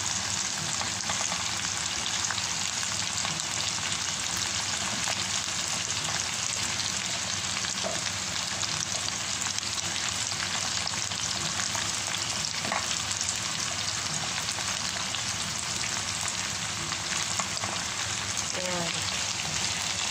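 Diced potatoes and carrots sizzling in hot oil in a frying pan, a steady frying hiss.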